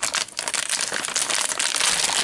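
A silvery anti-static shielding bag crinkling and crackling as hands open it, a quick run of crackles throughout.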